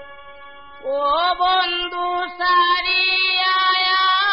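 Harmonium playing held reed chords under a man's voice singing a Bengali folk song; the chord drops away at the start, and the voice comes in a little under a second in, sliding up into each note and then holding long, ornamented tones.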